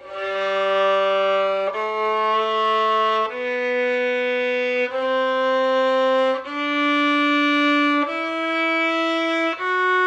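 Violin playing the first octave of a G major scale slowly upward from the open G string: long, separate bowed notes of about a second and a half each, G, A, B, C, D, E, with F sharp beginning near the end.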